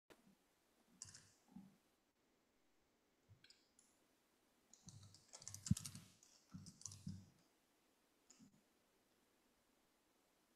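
Faint, scattered clicks and light knocks of a computer keyboard and mouse, in small clusters, the sharpest click a little over halfway through.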